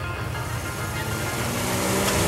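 Drag-racing vehicles' engines running at the starting line, then an engine revving up and growing louder near the end as the Chevrolet Blazer launches off the line.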